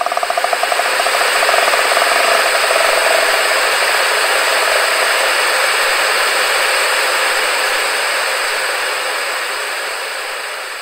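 Loud, steady hiss of static noise that swells at first and then slowly fades. A rapidly pulsing tone dies away under it over the first few seconds.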